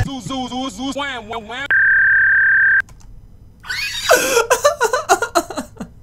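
A voice with a wavering, warped pitch, then a loud, steady censor bleep tone lasting about a second that cuts off sharply. After a short pause comes choppy laughter.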